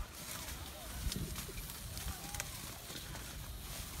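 Low wind rumble on a phone's microphone, with faint distant voices and a few light knocks from handling.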